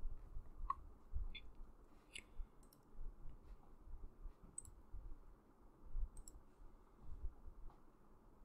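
Faint computer mouse clicks, a handful spaced irregularly a second or two apart, over quiet room tone.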